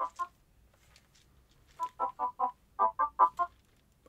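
Yamaha Tenori-On sequencer playing short electronic notes in quick, evenly spaced runs of four, about five notes a second. Two notes sound at the start, then there is a pause of about a second and a half before the runs.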